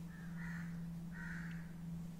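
Two faint, harsh bird calls, each about half a second long, over a steady low hum.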